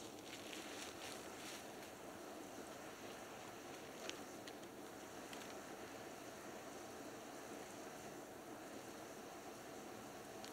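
Firewood burning in a fire pit: a faint steady hiss with a few small crackles, and one sharper pop about four seconds in.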